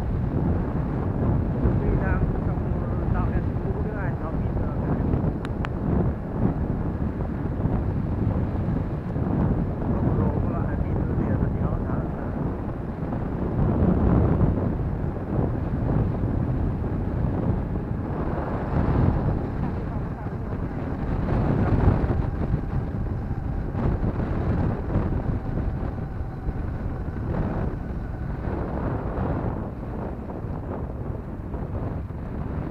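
Wind rushing over the microphone of a moving motorbike, with the bike's engine running underneath; the noise swells and eases as the ride goes on.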